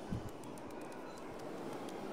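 Faint, steady background hubbub of a large dining hall full of people seated on the floor, with a soft bump just after the start as a hand wipes water off a leaf plate on the stone floor.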